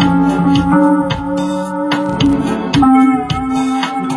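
Hammond Elegante XH-273 electronic organ played with both hands: sustained chords under a moving melody line, with changing chords and many sharp note attacks.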